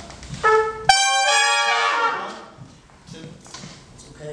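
A section of four trumpets plays with bells raised above the music stands: a short note about half a second in, then a loud held chord that cuts off about two seconds in and rings away in the room.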